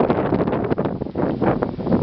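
Hard plastic wheels of a toddler's ride-on trike rolling over asphalt: a continuous rough rolling noise.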